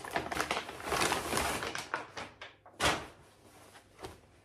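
Paper gift bag rustling and crinkling as hands rummage inside it, with one sharper crinkle about three seconds in.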